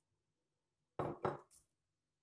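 A brief clatter of hard kitchen things knocking together: three quick knocks and clinks starting about a second in, after a moment of quiet.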